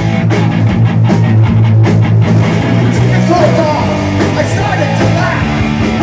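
Punk rock band playing live at loud volume: distorted electric guitar, bass and drums, with a fast, even drum beat during the first two seconds.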